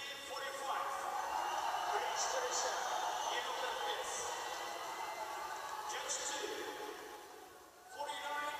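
A man's voice announcing over an arena public-address system, echoing and indistinct, reading out the judges' scores.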